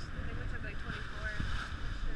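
Wind buffeting the microphone and water rushing past the bow of a boat under way at sea, a steady rough rush.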